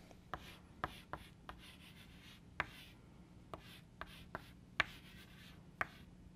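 Chalk writing on a blackboard: a faint, irregular series of sharp taps and short scratches as letters are written.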